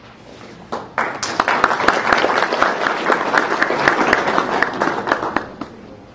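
Audience applauding: many people clapping, starting about a second in and dying away near the end.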